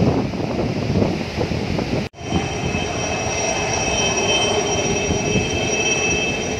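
Wind and rough sea noise. After a brief dropout about two seconds in, it gives way to a steady engine hum with several thin, high whining tones held level.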